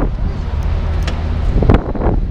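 Wind buffeting the microphone over a low, steady scooter engine running.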